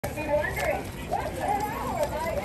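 Indistinct voices of people talking, no words made out.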